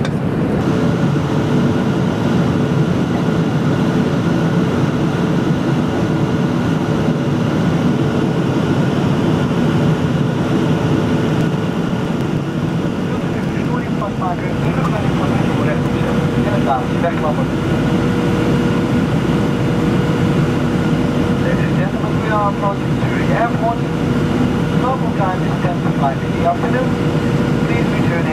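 Steady cabin noise of a Boeing 737-900 airliner in flight, heard from a window seat: the even drone of its CFM56 jet engines and the airflow over the fuselage, with a steady hum running through it.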